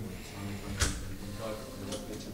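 A single sharp click or knock a little under a second in, over faint speech in the room.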